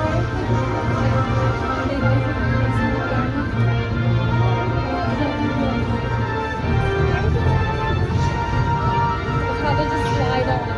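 A film soundtrack playing over a theater's speakers: steady music with a voice in it.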